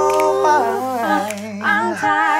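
A cappella vocal group singing in close harmony over a low bass voice: a held chord for about half a second, then the voices slide to a new chord, with a rising phrase near the end.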